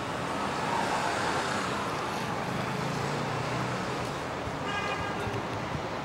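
Steady city street traffic noise, with a vehicle engine passing through. A brief horn toot sounds about five seconds in.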